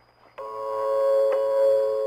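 Shortwave station interval signal: a slow tune of held electronic notes, each about a second long, coming in abruptly about half a second in over faint receiver hiss.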